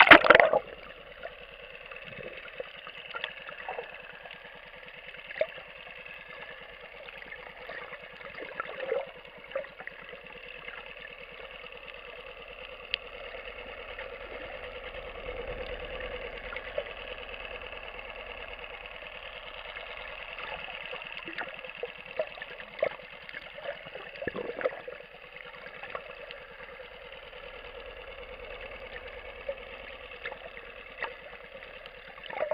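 A splash as the camera goes under, then a muffled, steady hum of a boat engine carried through the water, heard underwater with scattered faint clicks.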